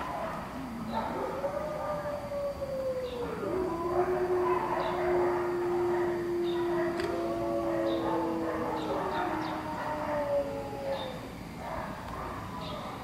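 Long drawn-out howls from more than one animal, overlapping: one rising and falling near the start, then a long steady lower howl lasting several seconds while higher howls join in.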